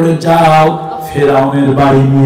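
A male preacher's voice chanting in the sung, melodic style of a waz sermon, with two long held notes.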